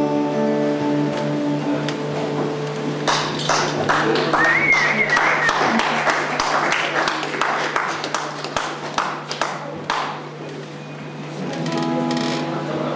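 An acoustic guitar's last chord rings out and fades, then a small audience claps for several seconds, with one high cheer early in the clapping. Near the end a guitar starts playing again.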